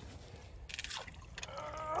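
Shallow water splashing and sloshing, with one brief splash about a second in, as a trap chain is hauled out of a flooded culvert.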